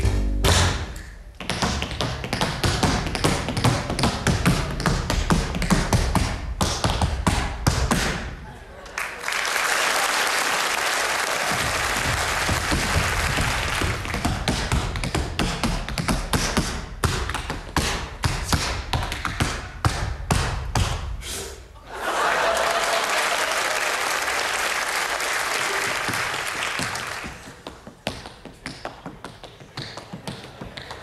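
Tap shoes clicking out quick, dense rhythms on a stage floor, with bass-led music under the first third. Through the middle and again a little later, a long steady hiss washes over the taps.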